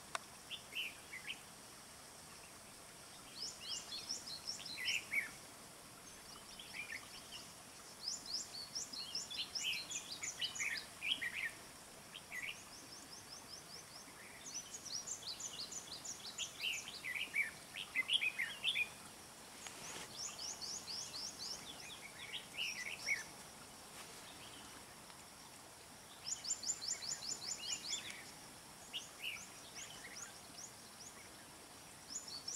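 Red-whiskered bulbuls calling: short chirping phrases mixed with quick runs of high, thin notes, coming in bursts every few seconds over a faint steady hiss.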